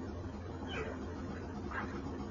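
Two short, faint, high-pitched animal-like cries about a second apart, over a steady low hum and hiss.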